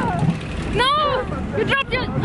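A woman's high-pitched scream on a Wild Maus roller coaster ride, one rising-and-falling shriek about a second in, over the low rumble of the moving ride car.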